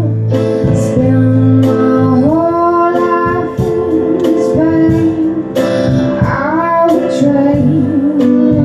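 Live music: a woman singing long held notes over piano with a band, her voice sliding up into notes twice.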